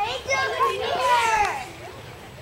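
Children's voices talking for about the first second and a half, then quieter.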